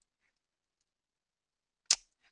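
Near silence, then near the end a brief high hiss of a quick intake of breath before speaking.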